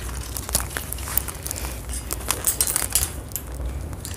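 Wire shopping cart rattling and clicking unevenly as it is pushed along a store floor, over a steady low hum.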